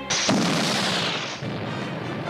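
Cartoon explosion sound effect: a sudden loud blast just after the start, its rushing noise fading away over about a second, with the orchestral score continuing underneath.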